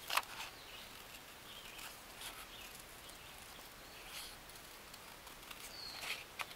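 Scissors cutting through an index card: a few faint, scattered snips over a low background hiss.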